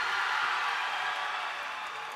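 Audience applause from a large crowd, a steady patter that eases slightly toward the end.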